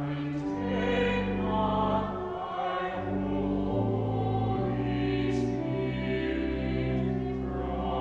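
A small choir singing in harmony in a reverberant cathedral, with held chords that change about every second.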